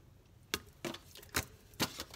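Four sharp, separate clicks from tarot cards being handled and set down, card against card and against the hard surface.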